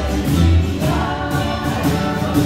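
Live acoustic dance band, upright bass among its instruments, playing a waltz: sustained melody notes over a moving bass line.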